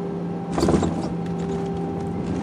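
Airliner cabin with a steady engine hum. About half a second in, a sudden thump and rumble as the main wheels touch down on the runway, followed by scattered rattles through the cabin while the wing spoilers deploy.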